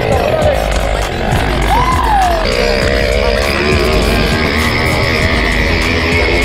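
Wind buffeting the microphone of a handlebar-mounted action camera on a moving bicycle, a steady low rumble. Music comes in about halfway through.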